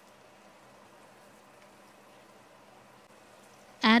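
Faint, steady sizzling of mutton frying in a thick masala in a cast iron pot. A voice starts speaking right at the end.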